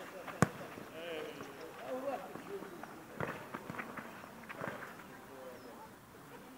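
A sharp, loud kick of a football about half a second in, and a second, fainter knock about three seconds in, with players' voices and shouts in the background.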